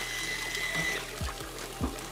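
Water running steadily from a kitchen tap, with a few soft knocks and faint background music.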